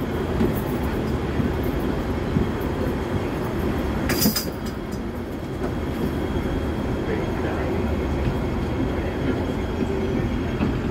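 Steady rumble of a Hong Kong double-decker tram running, heard from its upper deck, with a brief sharp hiss about four seconds in.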